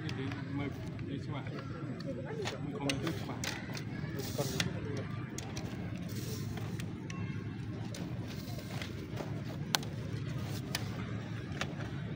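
Indistinct low voices over steady outdoor background noise, with scattered small clicks and rustles.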